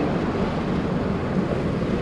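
Steady road and wind noise inside the cab of a Dodge Ram pickup moving at road speed, an even rushing sound with no single event standing out.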